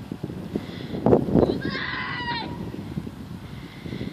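A distant person yelling: one high, wavering call of under a second about halfway through. Under it are low wind rumble and a few handling bumps on a phone microphone.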